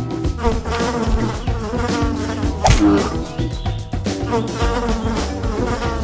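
Cartoon bee buzzing sound effect, swelling and fading in waves, with a sharp hit about halfway through.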